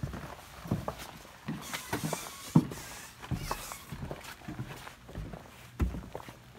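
Footsteps and irregular knocks of a person walking across a catamaran's deck, with some rustling between them; the sharpest knock comes about two and a half seconds in, and another just before the end.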